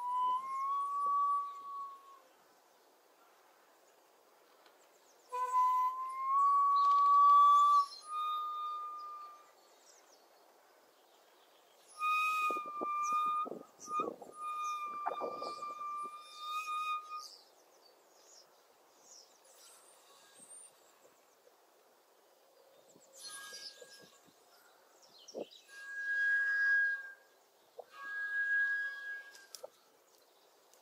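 Shakuhachi played in slow, breathy phrases of long held notes, each note sliding up slightly as it starts, with pauses between the phrases. The last phrases, in the second half, sit higher in pitch.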